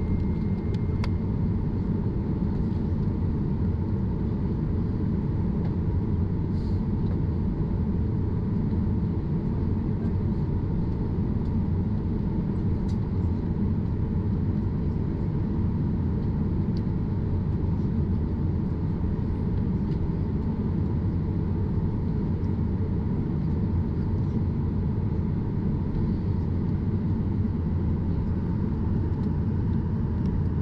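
Steady cabin rumble of a Boeing 737-800's CFM56 turbofans at idle as the airliner taxis, with a faint steady whine over the low roar.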